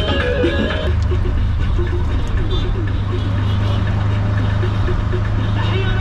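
Tuk tuk (auto-rickshaw) engine running with a steady low drone while driving through traffic, heard from inside the open cab. Music stops about a second in.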